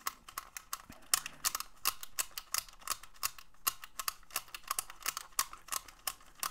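Plastic combination key lockbox's code wheels being spun by thumb in change mode to scramble the combination, giving a fast, irregular run of small plastic clicks.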